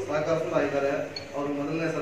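A man's voice in long, drawn-out phrases.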